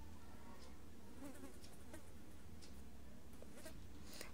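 Faint sizzling and crackling of sliced onions and tomatoes frying in oil in a karahi, over a steady low hum.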